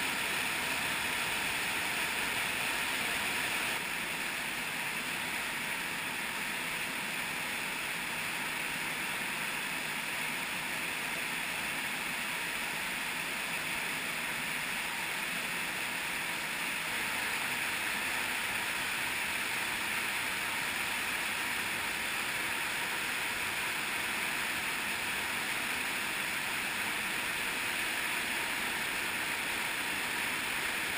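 Underground cave stream rushing over waterfalls and cascades: a steady, loud rush of white water with no break.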